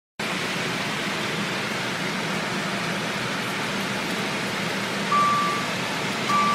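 Steady background hiss and low hum, then about five seconds in a single short electronic chime from a Dodge Viper's dashboard as the ignition is switched on.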